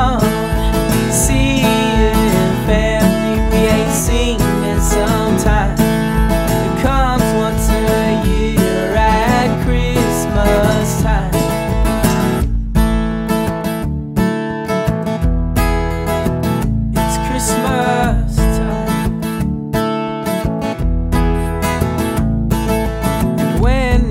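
Country-style song on strummed acoustic guitar, an instrumental passage with no words sung.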